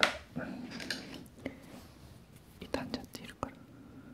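Close-miked handling of a small plastic bottle and a wooden stick. There is a sharp click at the start, then rustling, then a cluster of light clicks and taps about three seconds in.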